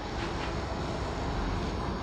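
Whiteboard duster rubbing steadily across a whiteboard as it is wiped clean, a soft even swishing noise.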